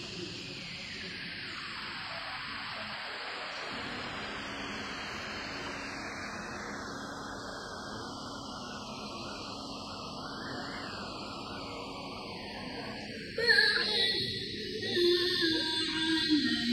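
A steady hiss that grows duller, with no voice, while the reciter pauses; about 13 seconds in, a woman's voice comes in loud with melodic Qur'an recitation (tilawah).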